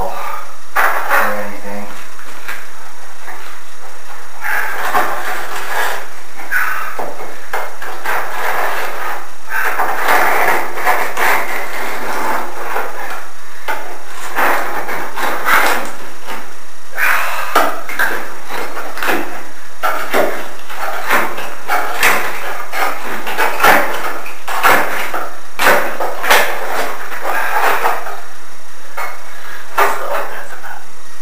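Knocks, scrapes and thuds of a heavy old aquarium window pane being pried loose and shifted in its frame, with a cluster of sharp knocks in the second half. Indistinct voices run alongside.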